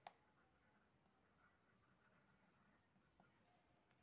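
Very faint scratching of a pen writing by hand on a textbook page, near silence, with one short click right at the start.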